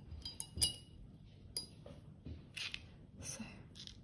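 A paintbrush clinking a few times against a glass water jar, short ringing taps in the first second or so, as it is dipped to pick up water for watercolour-pencil painting.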